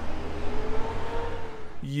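Wind rumbling on the microphone, with a faint steady hum that rises slightly in pitch. A man's voice starts near the end.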